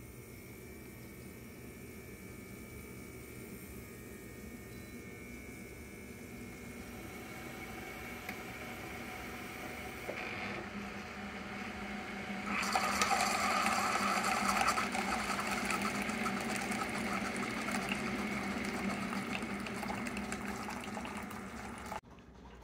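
Keurig single-serve coffee brewer running a brew cycle: a steady pump hum that slowly grows louder, then about twelve seconds in a sudden louder rush as the coffee starts streaming into the paper cup, which goes on to the end.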